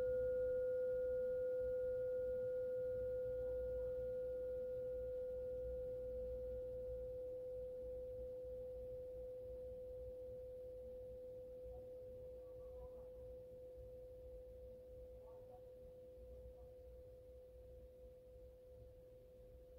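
A single struck note used for clearing energy: one steady pitch with a fainter higher overtone, ringing on and slowly fading away.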